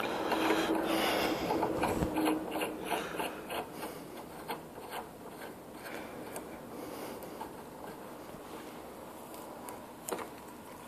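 A large taper tap being turned by hand to cut a 1-inch thread in aluminium pipe: a rasping, scraping sound with small clicks as the tap bites, loudest in the first few seconds and then quieter, with a faint squeak at the start.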